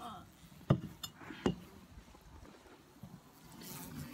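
Two sharp knocks about a second apart as hard beehive equipment is handled.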